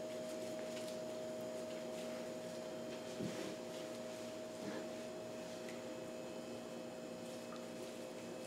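Quiet kitchen with a steady low appliance hum, and a few faint soft squishing handling sounds as gloved hands shape a warm, freshly stretched mozzarella curd into a ball.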